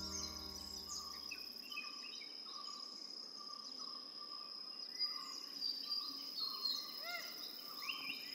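Faint outdoor nature ambience: an insect's steady high-pitched trill with scattered short bird chirps that come more often in the second half. The low notes of a music chord die away in the first couple of seconds.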